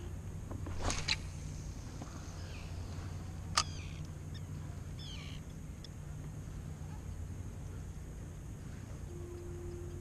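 Handling of a spinning rod and reel: a couple of clicks about a second in and one sharp click midway, over a steady low hum. Short, high, falling bird chirps come a few times.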